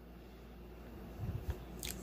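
A pause in a man's talk: faint steady room hum, a few soft wet mouth clicks a little past a second in, and a quick breath in just before he speaks again.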